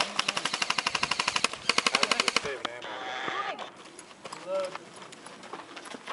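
Airsoft rifles firing on full auto: two rapid bursts of sharp, evenly spaced clacking shots, the first about a second and a half long and the second about half a second, then quieter.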